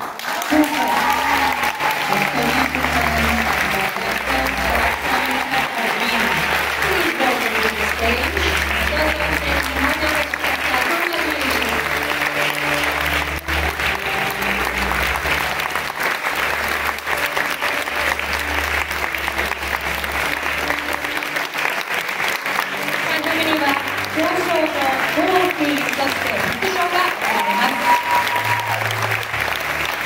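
Audience applauding steadily throughout, with music playing underneath on a low bass line that steps from note to note.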